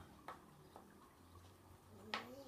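Near silence: room tone with two faint clicks in the first second.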